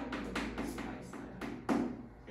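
Chalk tapping and scraping on a chalkboard while writing: a quick, irregular run of sharp taps, with the loudest knock near the end.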